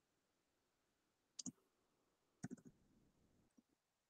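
Faint clicks of typing on a computer keyboard: a couple of keystrokes about a second and a half in, a quick run of several about a second later, and one more near the end.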